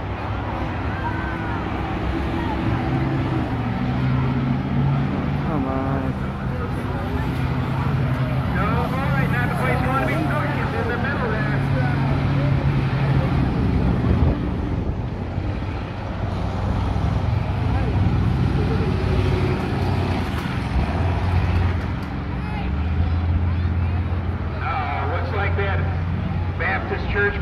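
Several school bus engines running hard as the buses race round the track, a low drone whose pitch shifts up and down, with people's voices talking over it.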